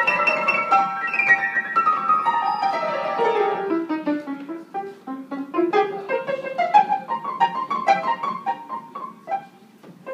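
Piano played by hand. A quick run of notes descends from the treble deep into the middle register over the first four seconds or so, then climbs back up. The notes thin out briefly just before the end.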